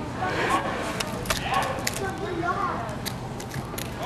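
Indistinct voices of people talking in the background, with scattered short, sharp clicks.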